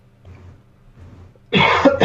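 A person coughs once, a short, sudden burst about one and a half seconds in, after a quiet stretch with only a faint low hum.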